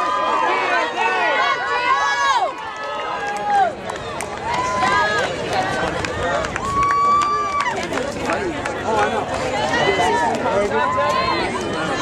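Crowd of spectators shouting and calling out to runners, many voices overlapping, with a few long drawn-out yells.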